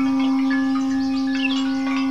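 Armenian duduk holding one long steady note, with birds chirping faintly over it.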